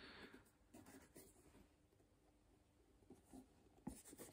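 Near silence, with a few faint rustles and scrapes of hands handling leather boots and their laces.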